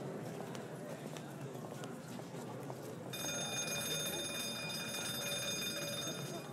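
Background ambience with faint scattered clicks. About three seconds in, a bell starts ringing steadily on several high tones and holds for about three seconds.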